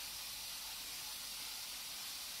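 Steady faint hiss of background noise, even and unchanging throughout, with no distinct events.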